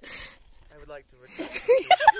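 People's voices, not words: a short breathy sound, quiet murmuring, then a voice breaking into laughter near the end.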